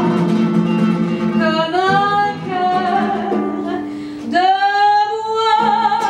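A woman singing with classical guitar accompaniment. Her voice slides up into long held notes with vibrato, twice, over sustained plucked guitar chords.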